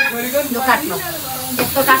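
Aerosol party snow spray can hissing for about a second and a half, then stopping.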